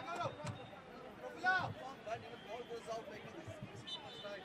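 Distant voices of football players shouting and calling out on the pitch, faint and brief, over low field ambience.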